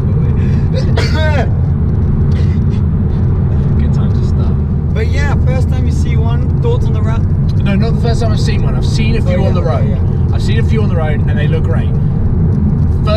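Steady engine and road drone inside the cabin of a moving Alpine A110, with its turbocharged four-cylinder pulling at an even pace.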